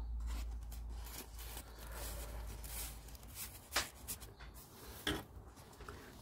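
Paper rustling and sliding as a handmade journal's pages and tags are handled and a page is turned, with two short soft taps in the second half, over a low steady hum.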